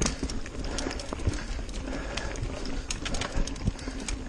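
Niner RIP 9 full-suspension mountain bike rolling fast over a dirt singletrack, its frame and parts rattling with frequent irregular clicks and knocks over a steady low rumble.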